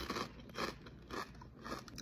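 A person chewing a mouthful of food close to the microphone, with about five short crunchy bites.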